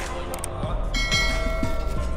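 A bell-like chime rings about a second in: several steady tones that fade away. Short clicks come just before it, over background music.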